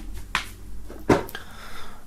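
Handling of a cardboard box as items are packed back into it: two short taps, the louder about a second in.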